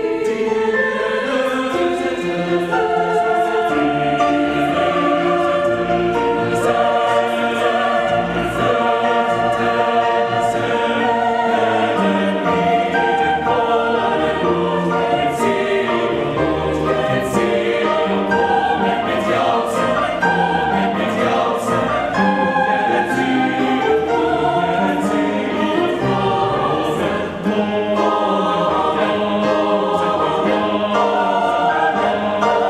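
Mixed choir singing a slow classical choral work, with grand piano accompaniment.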